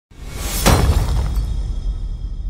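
Intro sound effect of glass shattering: it swells in, hits sharply just over half a second in, then breaks into fading tinkling fragments over a deep, sustained low rumble.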